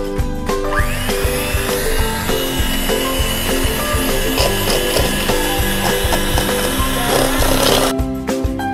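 Electric hand mixer beating sugar and melted butter in a stainless steel bowl. Its motor starts about a second in with a rising whine, runs steadily, and cuts off just before the end. Background music plays throughout.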